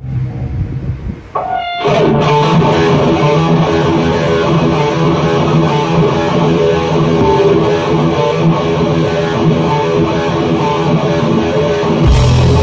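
Heavy metal band rehearsing with distorted electric guitars, bass guitar and drums. A quieter guitar passage ends in a note sliding upward, and the full band comes in loud at about two seconds in and plays on steadily.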